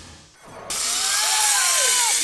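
Zip-line trolley running along a steel cable: a loud, whirring hiss that starts abruptly about two-thirds of a second in, with whistling tones that rise and fall. Before it, the tail of a low whoosh fades out.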